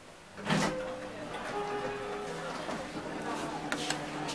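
A thump about half a second in, then the steady hum of a KONE traction elevator car under way, with a few light clicks near the end.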